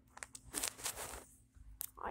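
Plastic packaging of a Mini Brands capsule ball being handled: a few short rustling, crinkling bursts, then a sharp click near the end.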